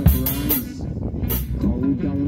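Acoustic drum kit played along to a dub reggae track with a deep, sliding bass line. The drum and cymbal hits thin out briefly about a second in, then pick up again.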